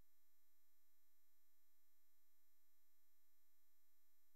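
Near silence, with only a very faint steady electrical tone underneath.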